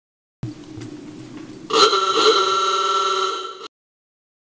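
An antique car's horn sounding: a quieter raspy buzz first, then about two seconds of loud, raspy, steady honk that cuts off suddenly.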